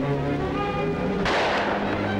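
Orchestral film-score music with sustained held chords, and a sudden loud crash a little over a second in that dies away within about a second.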